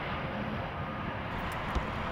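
Steady low rumble of vehicle noise with no distinct events: outdoor traffic or an engine running.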